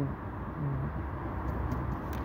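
Steady low background rumble with faint hiss, and a brief hummed 'uh' from a voice a little over half a second in.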